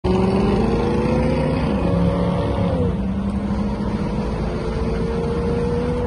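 Vintage car's engine running as the car drives along, its note rising, dipping about three seconds in, then climbing slowly again.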